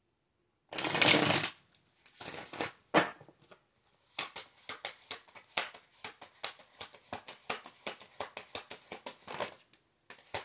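A tarot deck being shuffled by hand. Two longer rustling bursts of cards come in the first few seconds, then a steady run of quick card slaps, about six a second, until near the end.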